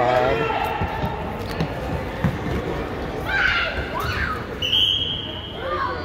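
Kids' indoor soccer on a hardwood gym floor: children's voices shouting and a few ball thuds on the floor, then just before the end a single high whistle blast about a second long.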